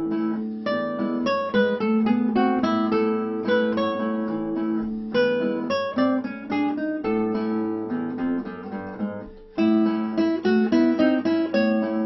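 Nylon-string classical guitar played fingerstyle: a plucked melody over held bass notes, with a brief pause about nine and a half seconds in before the tune carries on.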